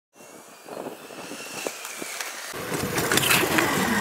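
Small electric go-kart with two 250-watt DC motors rolling on asphalt, its tyre noise and a faint high whine growing steadily louder, with a heavier rumble joining about halfway through.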